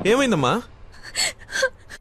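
A woman's tearful, gasping sob over the phone, falling in pitch in the first half second, then a few short faint whimpers.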